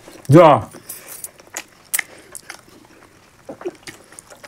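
Eating by hand: scattered small clicks and smacks of chewing and of fingers picking food off a plate, after one short spoken word near the start.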